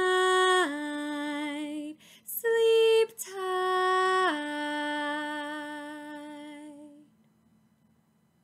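A woman singing slowly without accompaniment, in two drawn-out phrases that each step down in pitch. The last note is held and fades out about seven seconds in.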